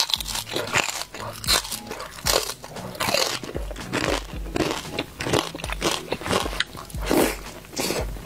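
Close-miked eating: loud, irregular crunching and chewing of crispy-skinned fried pork, several crunches a second, with a fresh bite into a crispy fried piece near the end.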